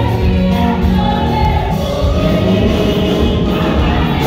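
A congregation singing a gospel worship song together, loud and sustained.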